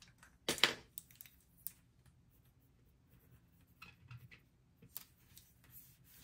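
Faint handling sounds of paper and stickers on a desk: a short sharp click about half a second in, then a few soft ticks and scrapes.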